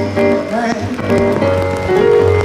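Live reggae band playing an instrumental passage with a pulsing bass line.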